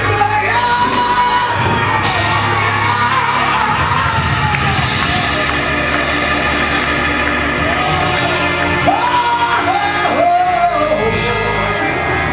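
Live gospel praise music in a church, with congregation voices singing and shouting over it.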